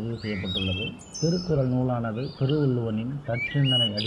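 A man's voice speaking, with birds chirping in short, high whistled notes in the background.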